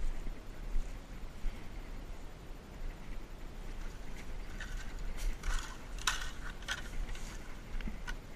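Footsteps crunching and crackling through dry bamboo leaf litter, a cluster of steps in the second half, over a steady low rumble on the microphone.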